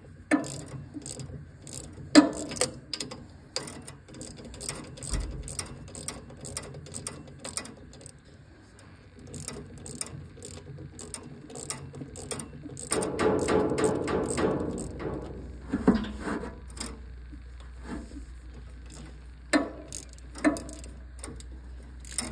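Ratchet wrench with a 10 mm socket clicking in a steady run of short clicks as it turns a valve cover bolt on a small engine. A louder stretch of mixed sound comes about two thirds of the way through.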